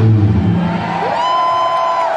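End of a live punk rock song: the last low chord rings out and dies away, then a held tone that glides up about a second in, over a cheering crowd.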